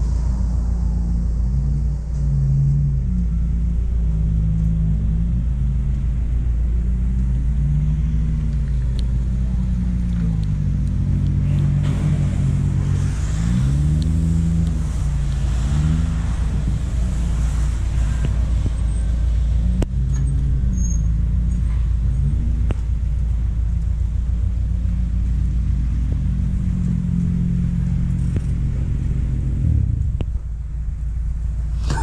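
Car engines running at low revs: a steady, loud low exhaust rumble, with engine notes that rise and fall in slow swells as cars pull in and move around the forecourt.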